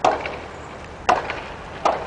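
Footsteps on a hard pavement: three sharp, unevenly spaced footfalls over low outdoor background noise.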